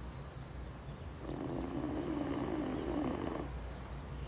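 A sleeping dog snoring: one long snoring breath lasting about two seconds, starting about a second in, over a steady low rumble.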